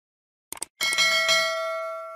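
Subscribe-animation sound effect: a quick double mouse click, then a small notification bell rung a few times in quick succession and ringing out as it fades.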